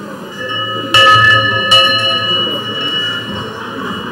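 Live electroacoustic music from double bass and real-time Kyma processing: two sharp bell-like strikes, about a second in and again just under a second later, each ringing on in several steady pitches that slowly fade, over a low sustained drone.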